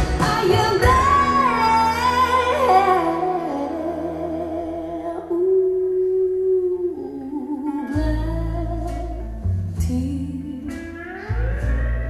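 A slow song played back over a pair of large Focal Grand Utopia EM Evo floor-standing loudspeakers in a listening room, led by a gliding guitar line, with deep bass notes coming in about eight seconds in.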